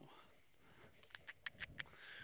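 A quick run of about six short, sharp kissing smooches, starting about a second in: a horse trainer's cue to drive the horse forward around the round pen.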